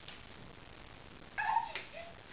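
A baby gives a short, high-pitched squeal of laughter, falling in pitch, about a second and a half in.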